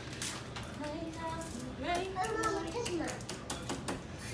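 Foil drink pouches and their plastic straws crinkling and clicking as they are handled and opened, under faint children's voices.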